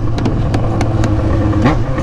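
Yamaha XJ6 motorcycle's inline-four engine running steadily while riding, heard from the rider's seat, with a few sharp clicks over the drone.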